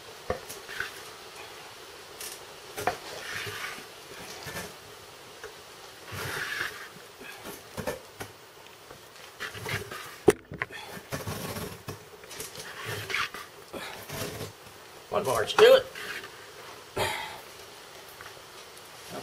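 Two flat wooden boards rubbed hard back and forth against each other, rolling a cotton-and-wood-ash fire roll between them to make it smoulder. The scraping strokes come irregularly, and the rubbing stops near the end when the top board is lifted off.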